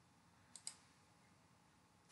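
Near silence broken by two faint, quick computer-mouse clicks about half a second in.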